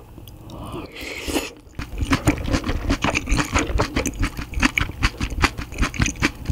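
Close-miked chewing of a mouthful of braised kimchi and rice, with wet mouth sounds and quick clicky crackles. The chewing starts in earnest about two seconds in, after a softer noisy sound as the bite is taken.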